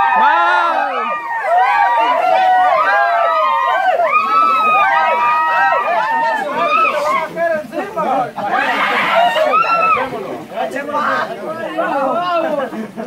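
A group of young people's voices talking and calling out over one another, many at once, with no single clear speaker.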